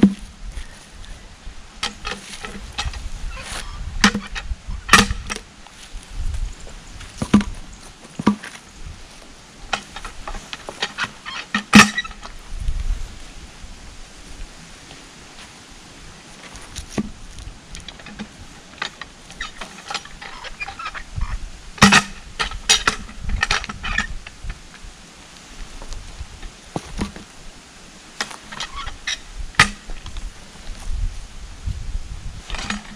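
A steel cant hook knocking and clanking against a maple log as the log is levered and rolled over the ground, with footsteps in dry fallen leaves. The sharp knocks come in irregular clusters, the loudest near the middle.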